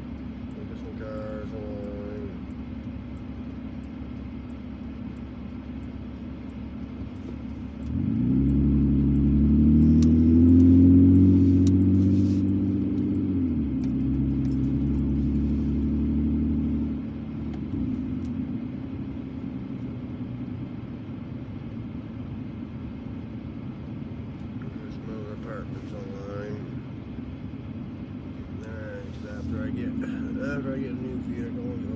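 Car engine heard from inside the cabin, a low steady hum that swells loudly about a quarter of the way in as the car accelerates, its pitch climbing and then easing back, before settling to a low hum again a little past the middle.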